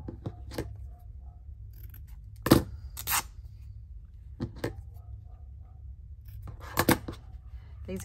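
Scissors snipping into the edge of a piece of plain fabric, and the fabric being torn in short rips: a handful of sharp snips and rips. The loudest comes about two and a half seconds in, and a quick pair near the end, over a low steady hum.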